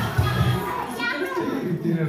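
A group of young children talking and calling out over one another, with music playing underneath.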